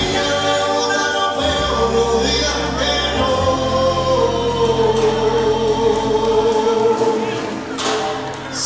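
Latin dance band playing live, with voices holding long sung notes together over bass and percussion; the music eases briefly near the end.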